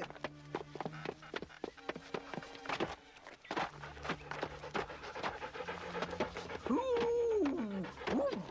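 Cartoon dog panting in quick breaths, with a long whine that falls in pitch near the end.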